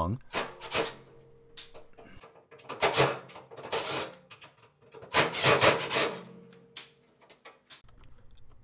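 Metal rasping and scraping in about five short bursts: a screwdriver working the screws of a cash drawer's solenoid lock mechanism, and the metal bracket rubbing against the steel housing as it is worked loose.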